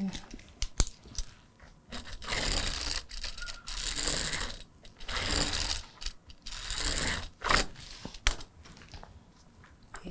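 A pen drawing marking lines along an acrylic quilting ruler onto quilted fusible fleece: four or five scratchy strokes, each half a second to a second long. A few sharp clicks of the ruler being handled come in the first second or so.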